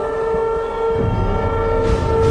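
A sustained horn-like chord, several steady notes held together, over a low rumble; the lowest note drops out briefly about halfway and comes back.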